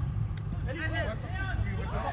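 Footballers' voices shouting across the pitch in short calls, over a steady low rumble.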